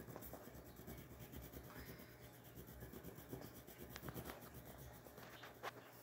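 Faint, steady scratchy rubbing of a coloured pencil shading on paper.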